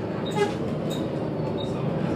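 Volvo B7TL double-decker bus's diesel engine idling steadily at a standstill, heard from inside the lower saloon, with a brief louder sound about half a second in.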